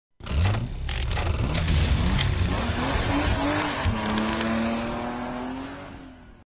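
Title-sequence sound effects of a car engine revving, with several sharp hits in the first two seconds. The engine note glides up and down, then settles into a steady note and fades out near the end.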